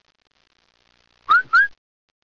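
Two short, loud whistles in quick succession about a second and a quarter in, each rising in pitch.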